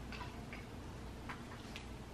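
A few faint, light clicks from small objects being handled, over quiet room tone.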